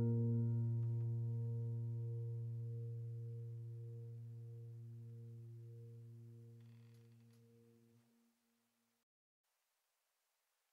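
Background music: a single low piano chord held and slowly fading away, dying out about eight seconds in.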